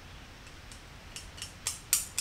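Light metallic clicks of a hardened A2 tool-steel knife blade rocking against an anvil face as it is pressed at its ends to check for warp: a few clicks in the second half, getting louder. The rocking shows the blade is still not flat, which the maker takes as having hammered a little too much and bent it the other way.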